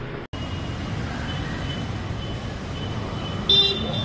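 Street traffic noise with one short, loud vehicle horn honk near the end.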